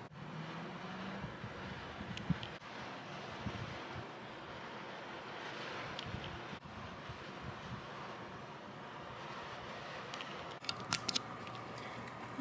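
Faint steady room noise with a few short clicks near the end.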